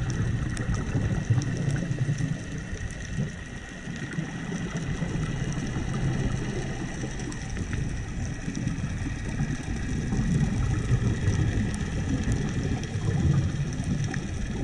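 Underwater ambience picked up through a GoPro's waterproof housing: a low, uneven rumble of water moving against the housing, with a faint steady hum and scattered faint clicks.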